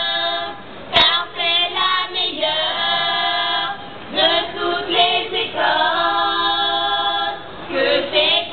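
A group of voices singing together without instruments, in phrases of long held notes broken by short pauses. A sharp click sounds about a second in.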